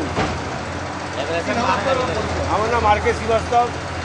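A man's voice talking, with other voices, over a steady low hum of an engine or traffic.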